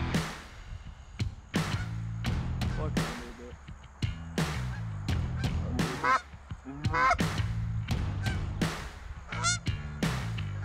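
Canada geese honking, a couple of calls near the middle and a quick run of honks near the end, over background music with a steady beat.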